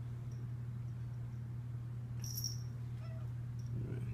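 A steady low hum continues unchanged, with no other machine sound in the room.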